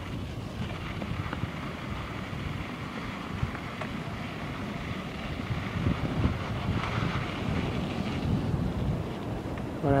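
Wind rumbling on the microphone over a steady wash of sea surf breaking against harbour breakwaters, the surf swelling briefly about seven seconds in.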